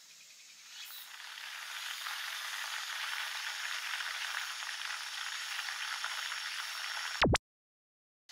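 A steady hiss that fades in over the first two seconds and holds, with a thin high whistle running through it. About seven seconds in it ends in a short, loud sweep and then cuts to dead silence.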